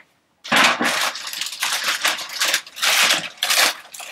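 Clear plastic bag crinkling and rustling in quick irregular bursts as it is handled and pulled around a boxed power amplifier, starting about half a second in.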